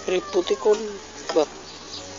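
Domestic cat giving a few short meows in quick succession, with another shortly after, over a faint thin whine.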